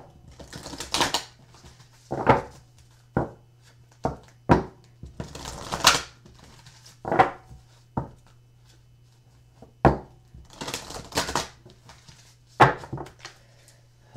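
Oversized oracle cards being shuffled by hand: about a dozen irregular bursts of card rustling and slaps, some with sharp clicks.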